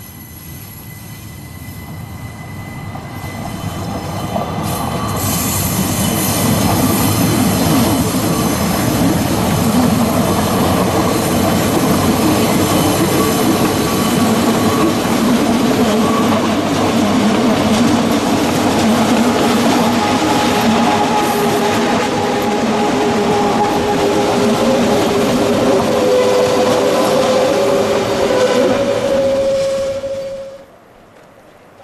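A Rhaetian Railway Allegra electric multiple unit hauling red passenger coaches approaches and passes close by, growing louder over the first several seconds into a steady rolling rumble on the rails. Its wheels squeal in a few held tones, most strongly in the last few seconds.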